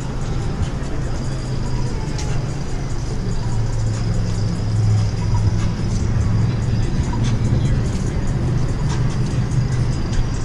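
City street sound: a steady low vehicle engine hum that swells a few seconds in, with music and faint voices mixed in.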